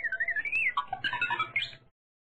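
High, whistle-like cartoon sound effect that wobbles up and down in pitch, then breaks into quick chirps and ends on a short rising chirp, a puzzled-sounding cue.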